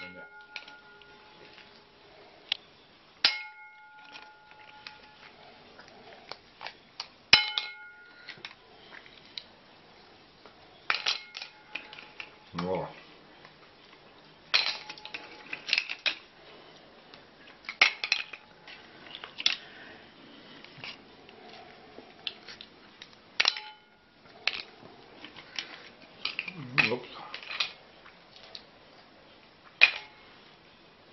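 Cooked mussel shells clicking and clattering on a plate and against each other as the mussels are picked open and eaten, irregular and scattered, with several clinks that ring on briefly like tableware.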